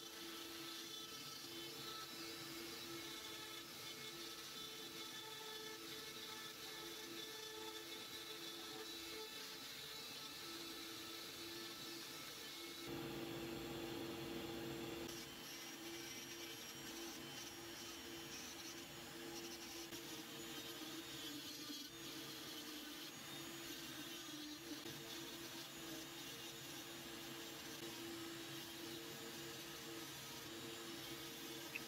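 Rotary carving tools with carbide burrs running at speed and cutting into the wood: first a Dremel 4300, then a Foredom flex-shaft handpiece, each with a steady motor whine. The tone changes and gets slightly louder about 13 seconds in.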